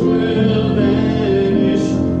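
A hymn sung by a man, with keyboard accompaniment: held notes moving step by step, with a sung consonant near the end.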